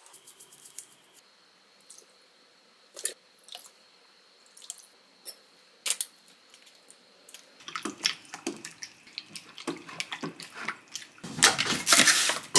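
A few isolated light taps, then, from about seven and a half seconds in, a busy run of clinks and clatters growing louder toward the end: a metal spoon mixing chicken pieces and seasonings in a glass mixing bowl.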